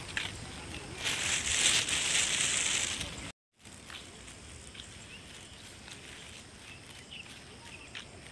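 Phone being handled: a loud hissing rustle for about two seconds as the phone is turned round, then the sound cuts out for a moment. Afterwards there is a faint outdoor background with a few short high chirps.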